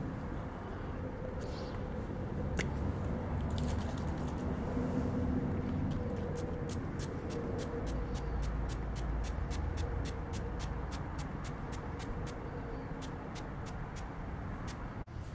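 Small spray bottle of rust activator misting in quick short spritzes, several a second, through the middle and later part, over a low steady outdoor rumble.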